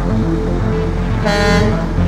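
A vehicle horn sounds one short honk, a bit under half a second long, about a second and a quarter in. Background music plays throughout.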